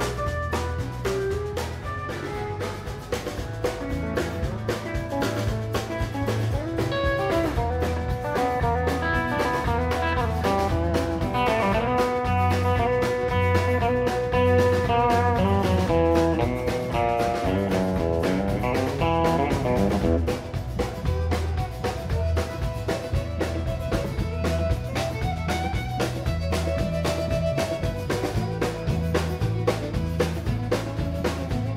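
Live country band playing an instrumental passage: bowed fiddle and guitars over bass and a steady drum beat.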